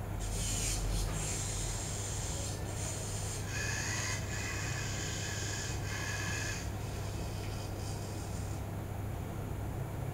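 Small electric motors of a homemade phone-controlled robot whirring in a series of short runs, with one longer, higher whine in the middle, as the robot runs its start-up calibration. The motors stop a little before the end, leaving a steady low hum.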